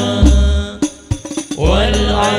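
Hadroh al-Banjari ensemble: male vocalists singing sholawat into microphones over terbang frame drums with deep bass beats. About a second in, the music drops out briefly to a few light drum strokes, then the voices and drums come back in together.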